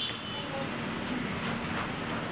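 Steady background hiss with a faint low hum, with the soft rustle of blouse fabric being folded by hand.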